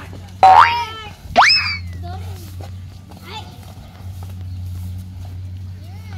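Two loud shouted calls about a second apart, the second a steep rising whoop, driving a water buffalo as it strains to haul a cart loaded with rice sacks out of the mud. A low steady hum runs underneath, with quieter voices later on.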